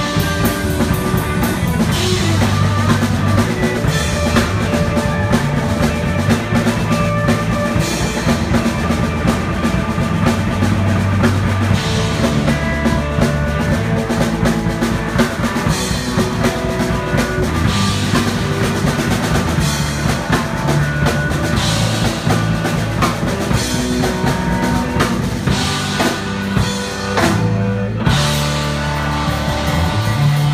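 Live rock band playing loudly: electric guitar, bass guitar and drum kit, with a brief break in the bass and drums near the end.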